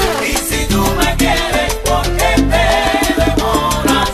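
Cuban salsa dance music, a recorded track with a steady percussion beat under held instrumental tones.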